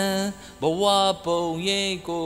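A man's voice singing or chanting a slow melody in held notes of about half a second each, with short breaks between them.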